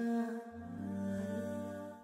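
Wordless vocal humming: several voices holding notes over a low hum, moving to a new chord about half a second in, then fading out at the end.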